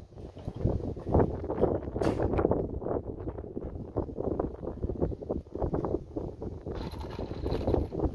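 Handful of metal screws rattling and clicking in a hand as they are picked out one at a time and set upright in pre-drilled holes in a wooden block: a quick, irregular clatter of small metal ticks.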